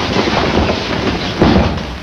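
An aikido throw: bodies and heavy cotton uniforms rustle and shuffle, then a thud about a second and a half in as the thrown partner lands on a padded mat.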